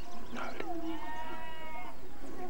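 A drawn-out animal call, held on one nearly steady pitch for a little over a second, with a shorter sound just before it.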